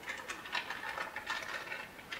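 A thin plastic candy bag crinkling and crackling in the hands as it is pulled open, a steady run of quick, irregular crackles.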